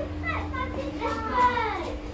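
A young child's voice calling out without clear words, with a long call that rises and then falls in pitch from about a second in.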